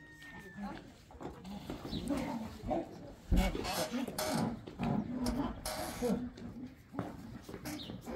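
Voices talking, mixed with animal calls, and a few knocks: one about three seconds in, another near four seconds.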